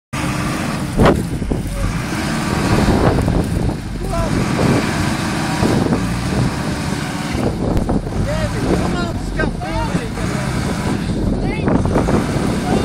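A minibus engine running as the bus is being pushed out of mud where it is stuck, with a sharp thump about a second in.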